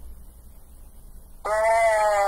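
A steady low hum, then about one and a half seconds in a person's voice holding one drawn-out, slightly falling note.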